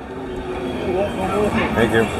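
Indistinct voices of people talking, growing clearer about a second in, over a low background hum.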